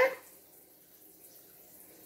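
A woman's voice trails off at the very start, followed by faint steady room hiss with no distinct sounds.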